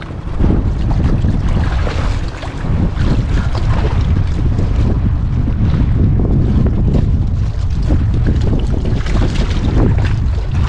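Wind buffeting the microphone in a heavy low rumble, rising sharply a moment in and holding steady, over sea water washing against the rocks.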